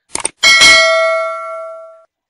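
A click sound effect, then a bell ding about half a second in that rings on and fades away over the next second and a half: the click-and-ding of an animated subscribe-button overlay.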